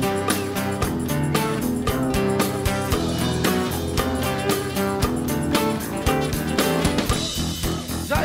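Unplugged rock band playing an instrumental passage led by guitar over a steady beat.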